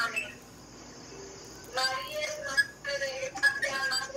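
A short hush of room noise, then about two seconds in a faint human voice with held, sing-song notes, half sung and half spoken, comes through the video-call audio.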